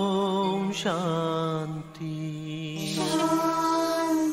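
Devotional chant music: long held, wavering vocal notes over a steady drone, the melody moving to a new note about a second in and again near three seconds.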